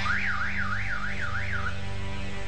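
A car alarm warbling, its pitch swinging up and down about three times a second for five sweeps, stopping after about a second and a half.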